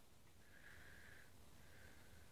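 Near silence, with a faint high-pitched sound that comes and goes twice.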